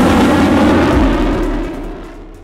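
Fighter jet's engine roar as it flies past, steady and loud, then fading away over the last second.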